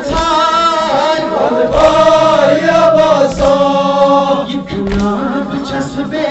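Male voice chanting a Kashmiri noha (Muharram lament) through a microphone and loudspeaker, in long, wavering sung lines, with other voices chanting along. A low thump recurs about every second and a half.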